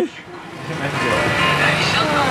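Indistinct voices mixed with music, swelling about half a second in after a brief lull and then holding steady and dense.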